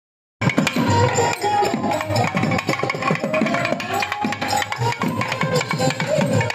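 Several South Indian thavil barrel drums played together in a fast, dense rhythm. They start abruptly a moment in, with a wavering melody line above the drumming.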